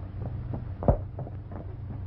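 Hoofbeats of a galloping horse on a dirt road, a quick uneven run of strikes with one louder thump about a second in, over the steady low hum of an old film soundtrack.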